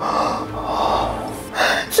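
A person breathing out long and breathily, then a short sharp intake of breath near the end, like a gasp.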